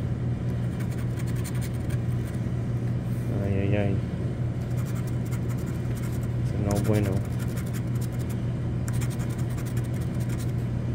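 A scratch-off lottery ticket's coating being scraped with a pencil-style scratcher in quick repeated strokes, over a steady low hum. Two short voice sounds come in, about three and a half and seven seconds in.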